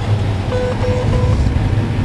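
Steady low drone of the John Deere S-Series combine running, heard from inside the cab, with three short, evenly spaced electronic beeps about half a second in as the unloading auger is swung out.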